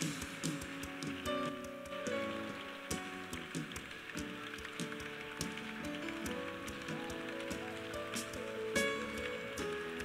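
Soft, sustained keyboard chords that change every second or so, over a steady hiss of crowd noise from the congregation, with scattered short clicks.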